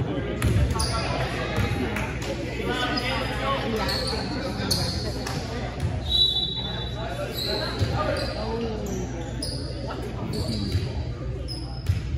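Indoor volleyball play: a few sharp thumps of the ball being hit, about half a second in, around the middle and at the end, with short high squeaks of sneakers on the hardwood gym floor. Voices echo through the large gym.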